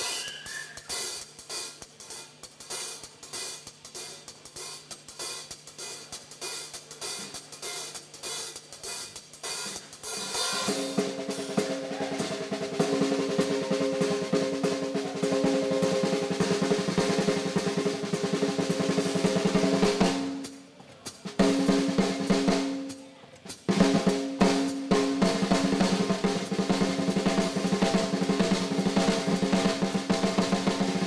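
Drum kit solo played live with sticks: lighter strokes for about ten seconds, then loud, fast rolls around the snare and toms with the drums ringing, broken twice by short pauses late on.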